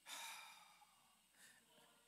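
A man's breath caught close on a clip-on microphone: a short breathy rush right at the start that fades within about half a second, then near silence with a fainter breath about one and a half seconds in.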